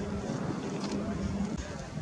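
Wind buffeting the microphone, with a steady low hum underneath that stops about one and a half seconds in.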